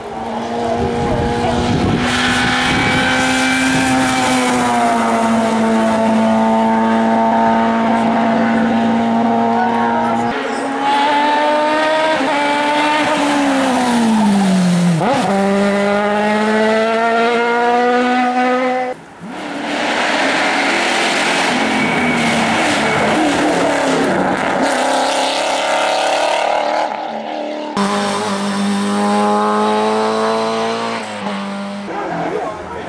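Small historic saloon race cars run hard at high revs up a hill-climb course, one car after another. The engine note holds steady, then falls sharply about halfway through as a car slows, and the sound changes abruptly twice as the shots cut.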